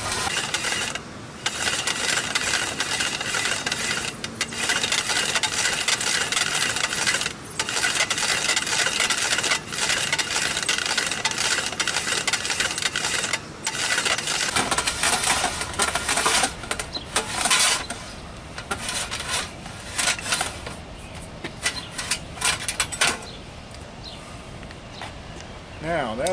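A large wheel-type tube cutter rolling around a 6-inch copper rigid coaxial transmission line, its cutting wheel scoring through the wall with a loud scraping and ringing of the pipe. It goes in long passes broken by short pauses every few seconds. About midway the steady cutting stops, and only scattered clicks and clinks of metal follow.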